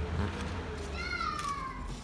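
A single high animal call, falling in pitch and about a second long, beginning about a second in.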